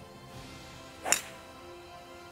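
A three wood striking a golf ball off the tee: one short, sharp crack about a second in, over background music.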